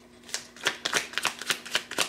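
A deck of oracle cards being shuffled by hand: a quick run of crisp card slaps and riffles, about four or five a second, starting about a third of a second in.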